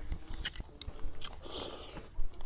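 A person chewing a mouthful of rice and fish close to the microphone, with repeated small mouth clicks and lip smacks.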